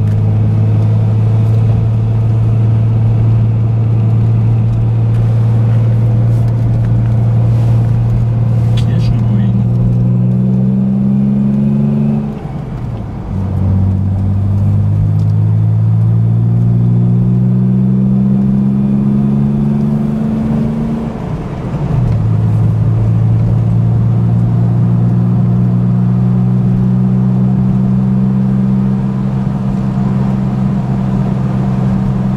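Ford Capri's engine heard from inside the cabin, running steadily, then twice rising in pitch as the car accelerates, each rise ending in a brief drop in level and pitch as a gear is changed up. After the second change, a little over two thirds of the way through, it settles into a steady drone.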